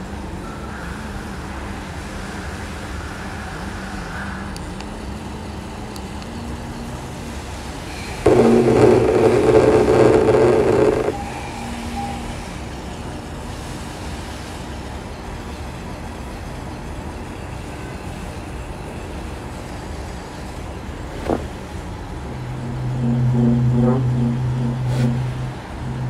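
Vibrator motor buzzing at a low setting, then much louder for about three seconds around a third of the way in. A click comes near the end, followed by a strong steady buzz with a pulsing pattern on top.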